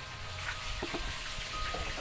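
Small calamansi fruits being handled and sorted in a heap, with a couple of soft knocks of fruit against fruit about a second in, over a steady background hiss.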